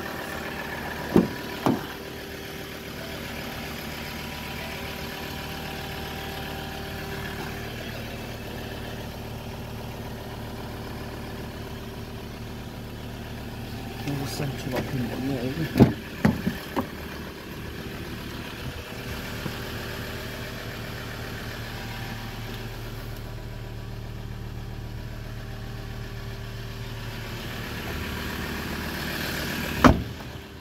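Ford Ranger 3.2 TDCi five-cylinder diesel engine idling steadily. Short sharp knocks come through it, two near the start and a louder clunk about halfway through, around when the driver's door is opened.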